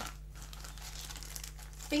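Clear plastic packaging crinkling faintly as hands handle it, with a couple of light taps near the start.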